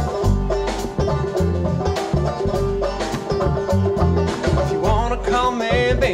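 A live band plays an instrumental break in a country-folk song: upright bass, a drum kit keeping a steady beat, and guitar, with no singing.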